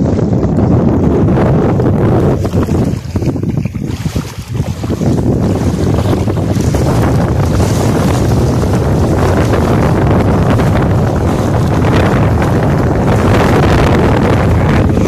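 Wind buffeting the microphone in a loud, steady rumble that eases briefly about three to four seconds in, over the wash of shallow sea water.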